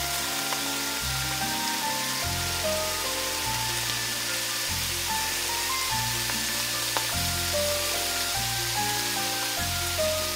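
Thin slices of beef brisket and green-onion kimchi sizzling on a hot cast-iron pot-lid griddle, a steady hiss of frying. Background music of held notes over a bass that changes about once a second plays over it.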